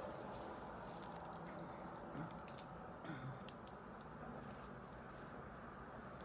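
Faint handling noises over quiet room tone: a few scattered light clicks and soft rustles as eyeglasses are put on and a skein of acrylic yarn with its paper label is handled.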